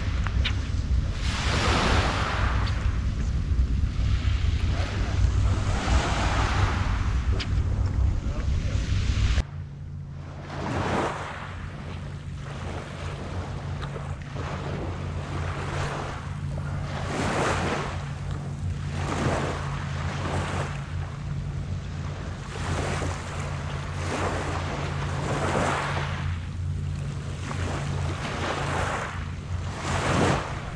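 Small waves washing onto a saltwater beach, one every second or two, with wind buffeting the microphone. About a third of the way in the wind rumble drops off abruptly, leaving the waves lapping at the shore clearer over a faint steady low hum.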